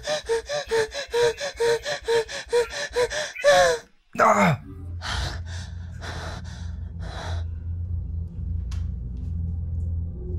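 A frightened woman panting in rapid, voiced gasps, about four a second, then a louder gasping cry that falls in pitch. Several slower, breathy breaths follow over a low, steady music drone.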